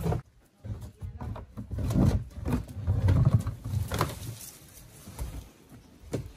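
An old boat hull dragged and pushed over a concrete ramp, scraping in irregular low surges with a few sharp knocks, the loudest stretch about two to three and a half seconds in.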